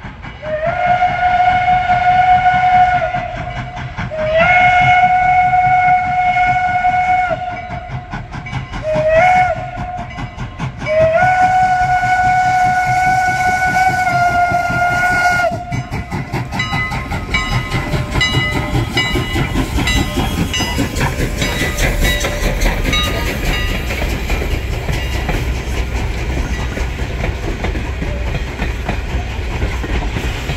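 Strasburg Rail Road No. 89, a 2-6-0 steam locomotive, blows its whistle for a grade crossing: two long blasts, a short one and a long one. It then rolls past with its coaches, a low rumble and clatter of wheels on rail that grows louder.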